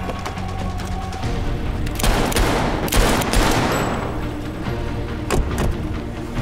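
Rapid automatic gunfire in a film shootout, sharp cracks coming in bursts, densest about two seconds in and again near the end, over a music score.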